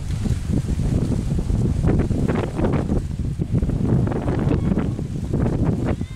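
Wind buffeting the microphone: a loud, gusting low rumble throughout, with some lighter rustle on top.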